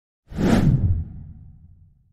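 A whoosh sound effect for an animated logo intro: it swells in suddenly about a quarter second in, is loudest for under a second, then leaves a low tail that fades away by the end.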